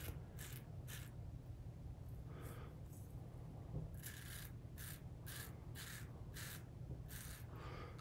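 RazoRock Game Changer 0.68 safety razor cutting stubble on a lathered cheek: about a dozen short, crisp scraping strokes, some in quick pairs.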